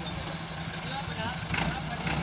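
Tractor diesel engine idling steadily, with a short clatter about one and a half seconds in.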